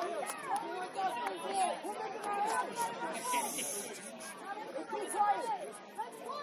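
Several people chattering and calling out at once, their voices overlapping, with a brief hiss about three seconds in.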